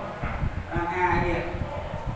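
Quick, irregular knocks and taps from a teacher at a whiteboard: a marker finishing strokes against the board and his shoes as he steps aside, under his speaking voice.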